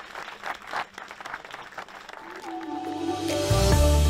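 Audience applauding, then music fading in over the clapping in the second half and coming up with a steady beat near the end.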